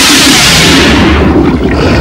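Loud, steady rushing sound effect for a news transition, like roaring water or a long whoosh. It is brightest at first and turns duller after about a second.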